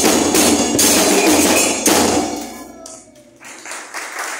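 Murga percussion of bass drums and cymbals playing a driving beat with sharp cymbal strokes. It stops about two seconds in and dies away.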